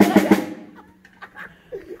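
Drum kit played in a quick burst of about four hits at the start, ringing away within half a second, followed by a few faint taps.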